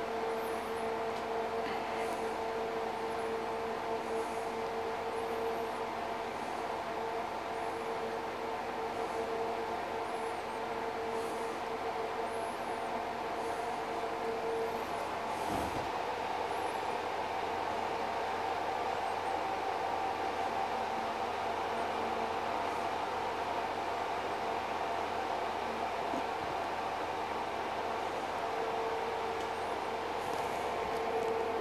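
Explosion-proof exhaust fan running steadily, a hum with several held tones over a rush of moving air, drawing air out of the sealed spray booth. A single faint click about halfway through.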